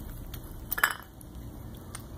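Cat crunching dry kibble off a wooden floor: scattered small clicks of pieces against the boards, with one louder, sharp crunch a little under a second in.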